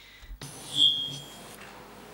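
A microphone comes live with a sudden rise in hiss, then gives a brief high-pitched feedback whistle lasting about half a second. It comes from headphones held too close to the live microphone.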